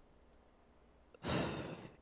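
A man's audible sigh close to the microphone, starting a little past halfway and fading away.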